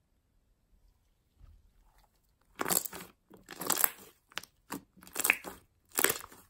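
A large red fluffy slime made with shaving foam being squeezed and kneaded by hand, squishing in several short, irregular bursts that begin about two and a half seconds in after a near-quiet start.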